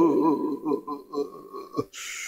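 A man's voice close to a microphone: a held, wavering sung note breaks off into short, uneven murmured vocal sounds that fade in and out, with a sharp click near the end.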